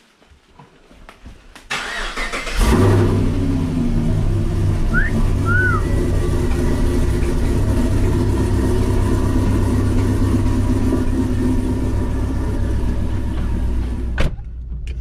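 Pontiac G8 GT's V8 engine cranked by the starter, catching about two and a half seconds in with a brief rev flare, then settling into a steady idle.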